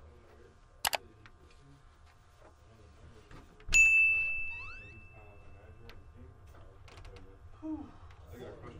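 Subscribe-button animation sound effects: a sharp mouse click about a second in, then a loud bell-like notification ding near the middle that holds one high ringing tone for about two seconds, with a quick rising swish at its start.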